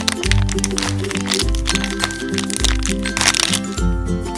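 Thin clear plastic bag crinkling as it is torn open and a small toy figure pulled out, in bursts that are busiest near the start and again about three seconds in, over background music.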